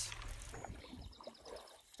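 Quiet water sounds of a canoe on a slow river current: faint lapping and swishing of water against the hull, growing quieter near the end.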